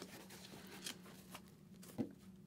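Faint rustling and a few soft ticks as a one-piece leather race suit's sleeve is gripped and lifted on a wooden workbench.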